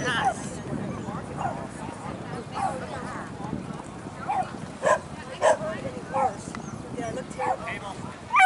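A dog barking in short, repeated barks, about one a second, while running.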